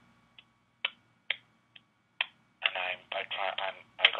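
Telephone-line audio: five short, sharp clicks about half a second apart, then a voice speaking over the phone line from about two and a half seconds in.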